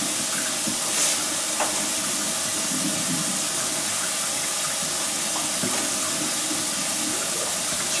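Kitchen tap running hot water steadily into the sink, an even hiss. A couple of faint clicks about a second in as the electric stove's burner knobs are turned.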